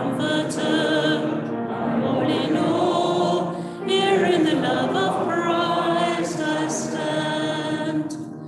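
Church congregation singing a hymn together, many voices on sustained, wavering notes, with a brief dip between lines just before the middle.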